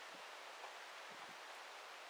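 Near silence: a faint, steady outdoor background hiss with no distinct sound.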